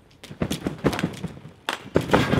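A run of about five dull thuds as a rider and a BMX bike land and bounce on a trampoline bed, the loudest near the end.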